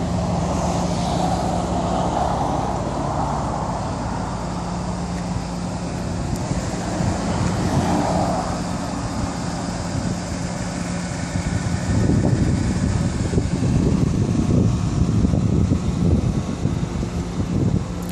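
Road traffic noise: passing vehicles and a steady low hum, with an uneven low rumble growing louder about two-thirds of the way through.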